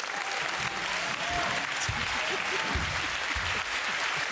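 Studio audience applauding, a dense, even clapping that holds steady throughout.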